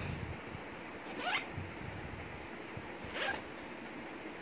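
A handbag's zipper being pulled twice, two short zips that rise in pitch about two seconds apart, with soft handling rustle of the bag between them.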